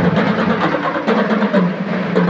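School marching band playing, mostly percussion and mallet keyboards, with little bass.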